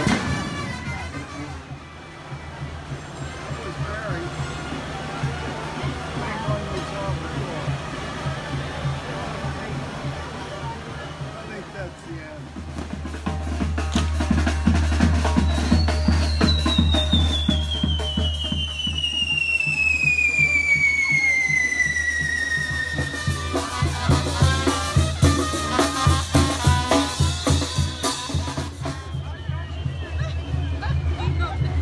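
Procession music with drums over a crowd. From about halfway in, fireworks crackle in rapid sharp bangs, and a long whistle slides down in pitch over several seconds.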